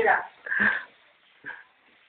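The end of a spoken word, then a short breathy sound from a person about half a second in and a fainter, briefer one about a second and a half in, like a sniff or a wheezy breath.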